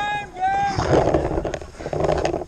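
Two short, high-pitched shouted calls from a player, followed by rustling and wind-like noise with two sharp clicks.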